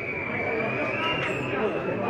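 Spectators chattering in a football stadium's stands, several voices overlapping, with a faint steady high-pitched tone running underneath.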